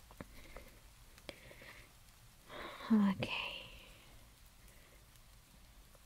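A woman's soft, breathy whispered vocal sound about halfway through, with a few faint small clicks before it.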